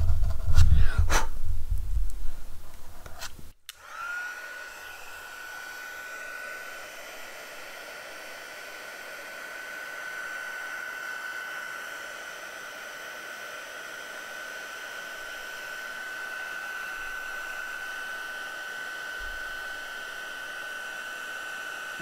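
Loud rubbing and knocking from handling the card for the first few seconds, then a heat embossing gun switches on and runs steadily, a fan noise with a high whine, melting gold embossing powder on the stamped sentiment.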